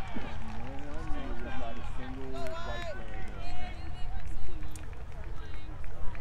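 Indistinct calls and shouts from players and spectators on a soccer field, in short scattered bursts over a steady low rumble.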